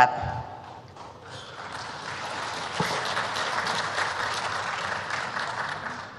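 Audience applauding: dense clapping that swells about a second in and then holds steady.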